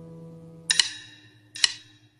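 The last of a held musical note fades away, then three sharp tick-like clicks: two close together about two-thirds of a second in, and one more shortly before the end.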